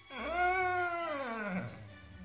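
A borzoi gives one long howl about a second and a half long, rising quickly at the start, holding, then sliding down in pitch as it fades near the end.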